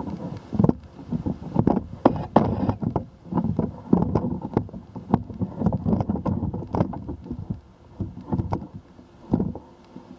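Handling noise from a pole-mounted camera: irregular low thumps, knocks and rubbing as the pole is carried and turned.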